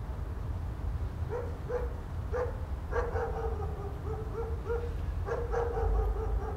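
Short, pitched animal calls, like a dog yelping or barking, repeating in clusters from about a second in, over a steady low rumble of background hum.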